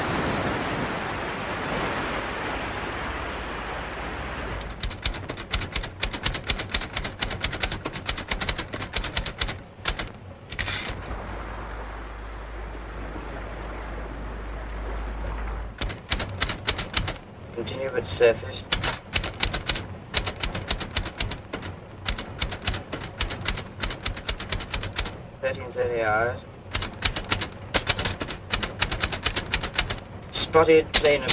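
Sea and wind noise for the first few seconds, then a manual typewriter typing in fast runs of keystrokes with short pauses between them.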